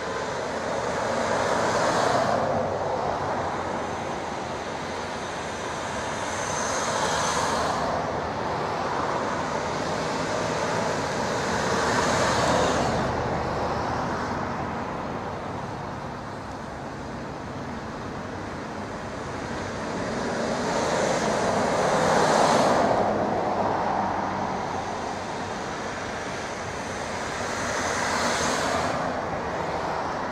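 A departing passenger train's rolling rumble mixed with road traffic, a continuous wash of noise that swells and fades roughly every five seconds as vehicles pass.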